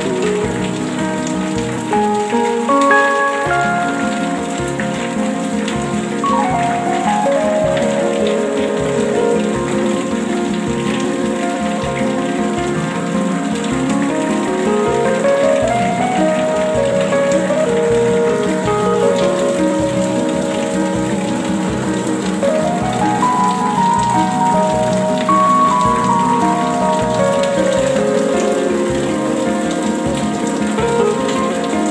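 Steady rain falling, with slow ambient music over it: soft held notes that step and slowly slide up and down in pitch.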